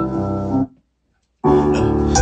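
Piano-led music playing back over studio speakers; it cuts off suddenly under a second in, and after a short silence another track starts abruptly about one and a half seconds in.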